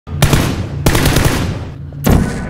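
Video-game automatic gunfire: a sharp shot about a fifth of a second in, then a rapid burst of fire just under a second in that fades away.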